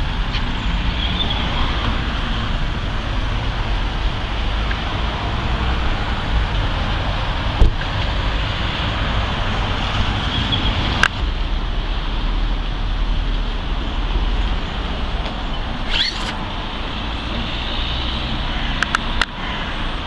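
Steady road traffic noise from a street, with a few brief knocks.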